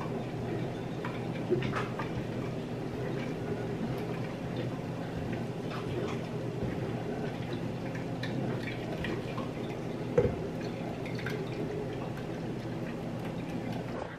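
Silicone spatula pressing and scraping fruit pulp through a mesh strainer, with juice dripping into the jar below. Soft scrapes and two light knocks, about a second and a half in and near ten seconds, over a steady low hum.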